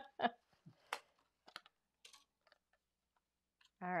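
A short laugh, then a few faint, scattered clicks and crackles of washi tape being peeled from cardstock and a thin metal cutting die being handled.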